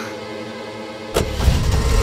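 A car door shuts about a second in, then the car's engine starts and runs with a low rumble, over a quiet film music score.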